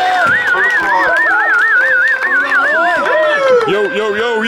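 A high warbling tone, wavering up and down about four times a second for nearly three seconds, over music and voices.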